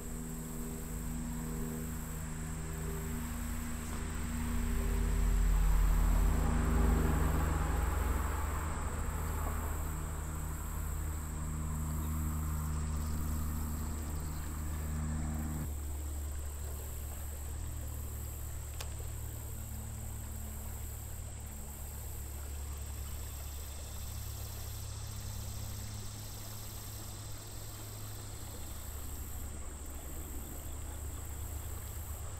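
Steady high-pitched chorus of summer insects buzzing, with a low hum and rumble underneath that swells for a few seconds early on and changes abruptly about halfway through.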